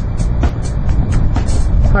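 Steady low rumble of wind on an outdoor microphone, with the light ticking beat of background music running over it. A man's voice comes in at the very end.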